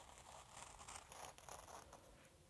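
Faint scratchy slicing of a knife blade cutting through the leather of a fox pelt in several short strokes, separating a narrow strip.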